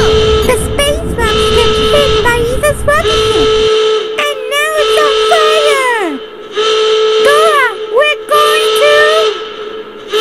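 Cartoon sound effects: a held high whistle tone, broken now and then, with many sliding whistle glides rising and falling over it. A low rumble runs under it and cuts off suddenly about four seconds in.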